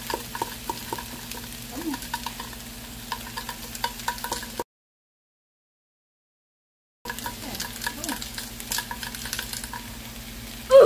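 Shrimp sizzling in a frying pan, a steady crackle of small pops and spits. The sound cuts out completely for a couple of seconds midway, then the sizzling resumes.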